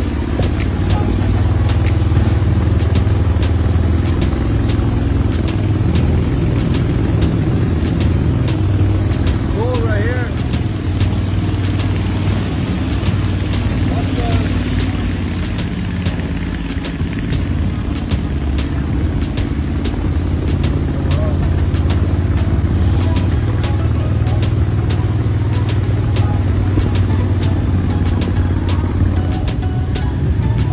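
Predator 670 V-twin gas engine driving a Mud-Skipper longtail mud motor, running steadily at cruising speed as a low drone, with music over it.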